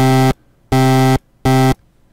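Buzzy synthesized tone from a Sytrus oscilloscope-music patch in FL Studio: one note played three times in short bursts, all at the same pitch. Its left and right channels draw a jack-o'-lantern pumpkin shape on an oscilloscope display.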